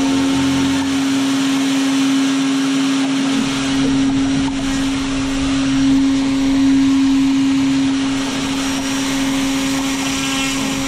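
Electric motor and propeller of a hand-held model airplane running flat out, a steady whine at one unchanging pitch, its thrust pushing the kayak along.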